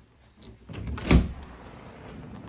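A door being opened to the outside, with one sharp thud a little over a second in.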